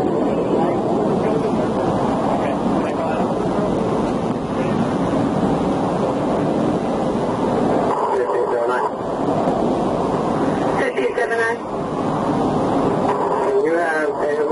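Steady rush of highway traffic passing close by, with wind noise on the microphone. The rush thins about eight seconds in, and indistinct voices come and go in the second half.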